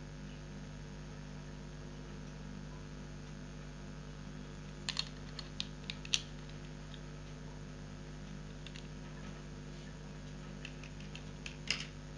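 Small plastic clicks and taps from laptop cooling-fan units being handled: a quick run of clicks about five seconds in and a few more near the end, over a faint steady electrical hum.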